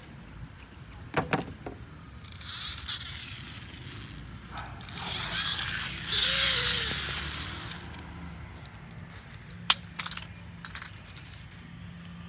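Handling noises of a small plastic toy car: a few clicks and knocks as it is picked up and turned in the hand, with two stretches of rustling. A single sharp click near the end is the loudest sound.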